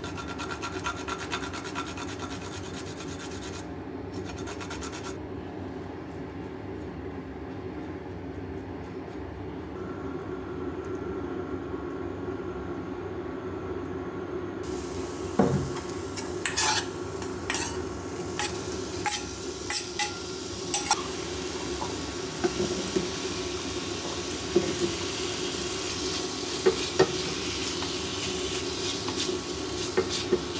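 Ginger being grated on a metal hand grater over a frying pan: quick rasping strokes in the first few seconds. About halfway through, meat and potatoes go into the hot oiled pan and sizzle steadily, with sharp clacks of the spatula against the frying pan as they are stir-fried.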